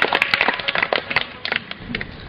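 A rapid, uneven run of sharp taps or clicks that thins out in the last half second or so.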